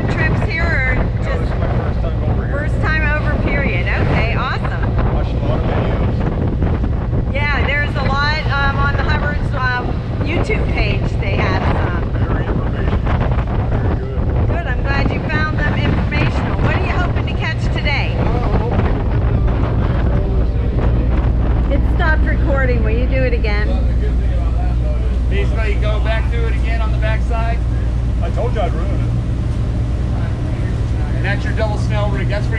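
A large party boat's engines drone steadily while it runs underway, with wind buffeting the microphone and the rush of water along the hull. Voices come and go over the engine noise.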